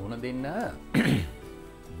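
A man clears his throat once, a short loud burst about a second in, after a few spoken syllables. Soft background music with steady held tones runs underneath.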